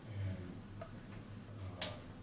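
Marker writing on a whiteboard: a few short taps and squeaks, the sharpest near the end, over a steady low room hum.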